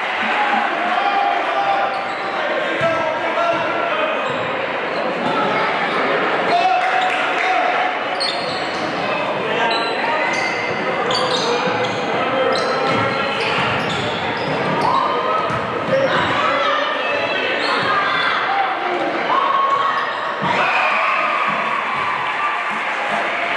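Crowd noise in a large echoing gym during a basketball game: spectators talking and shouting, with a basketball bouncing on the hardwood floor and sneakers squeaking, several short squeaks coming in the middle.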